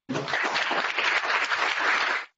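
Audience applauding steadily after a talk, many hands clapping together; it stops abruptly just after two seconds.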